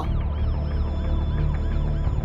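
Emergency vehicle siren sweeping rapidly up and down, over a low steady music drone.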